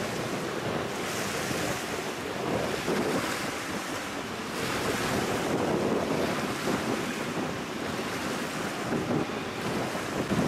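Wind-driven lake waves splashing and washing over the edge of a flooded road, with wind buffeting the microphone. The sound swells and falls steadily.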